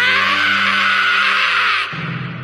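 Anime sound effect of a ship ploughing through a wave: a loud, steady rushing hiss of water and spray over the orchestral score, cutting off suddenly near the end.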